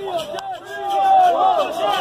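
Mostly speech: men's voices talking over the murmur of a crowd, getting louder about halfway through.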